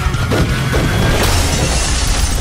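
Trailer music with a heavy low end, and about a second in, glass shattering, a bright spray of breaking glass that carries on to the end.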